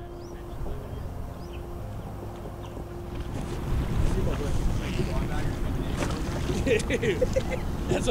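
Wind rumbling on the microphone on an open beach, with indistinct voices of several people in the background from about halfway, growing louder toward the end.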